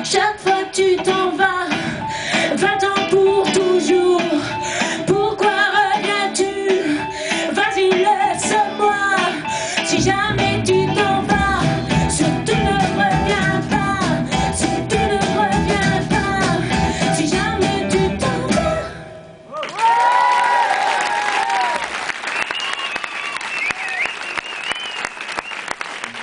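Live pop-rock band with electric guitars, keyboards and drums playing the final section of a song, the low end filling out about ten seconds in. The band stops suddenly just before twenty seconds in, and the audience breaks into applause, whistles and cheers.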